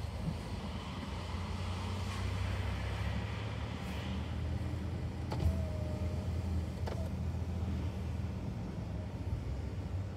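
Car driving slowly, heard from inside the cabin: a steady low engine and tyre hum. About halfway through come two sharp clicks a second and a half apart, with a faint thin whine between them.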